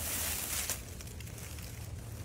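Faint rustling of a cloth snake bag and dry leaf litter as a carpet python slides out, with a few soft clicks in the first second, over a steady low hum.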